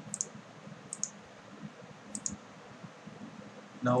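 Computer mouse clicking: three clicks about a second apart, each a sharp press-and-release pair of ticks, over faint room hiss.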